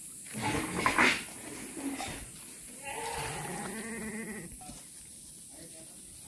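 Garut sheep bleating: a loud, rough call within the first second, then a steadier, level-pitched bleat about a second and a half long around the middle.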